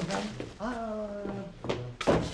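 A man's drawn-out "Aaa!" of surprise, rising in pitch and then held, followed near the end by a short knock.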